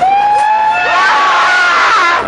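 Several passengers screaming and whooping together, in long overlapping high cries that build toward the end, inside the cabin of a Hagglund tracked vehicle.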